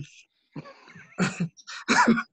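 Men laughing: a faint breathy start, then a few short bursts of laughter from about a second in.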